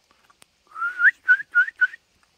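A person whistling to call a dog: one longer whistle that rises in pitch, then three short rising whistles in quick succession.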